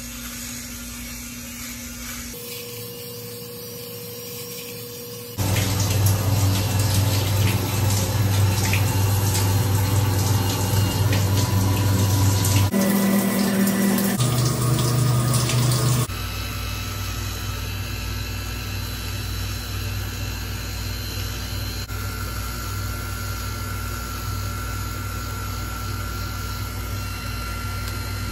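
Bell & Howell Tac Shaver, a small battery electric razor, running with a steady buzz as it is drawn over stubble, in several short stretches that change abruptly. The middle stretch is louder, with water running over the buzz as the razor is used wet.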